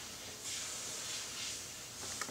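Faint rustle of fingers handling the plastic inner door-handle mechanism and its cables: a soft hiss that swells about half a second in, with no distinct click.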